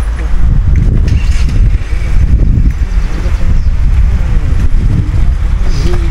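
Wind buffeting the camera's microphone: a loud, low rumble that flutters up and down in level.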